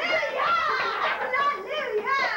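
Several high voices laughing and talking over one another.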